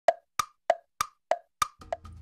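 An intro sound effect of short, bright pops, about three a second, alternating between a lower and a higher pitch.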